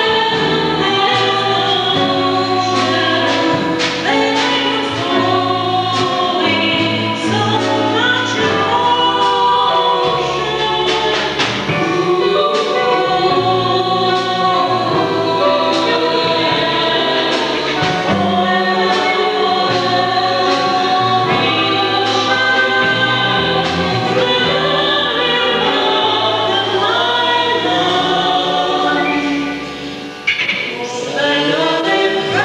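A women's vocal ensemble singing in close harmony, with a double bass playing a low line of held notes underneath. The music dips briefly near the end.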